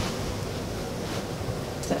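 Steady hiss of room noise with soft rustling as a leg is shifted and settled on an inflatable peanut birthing ball on a hospital bed; a woman starts speaking at the very end.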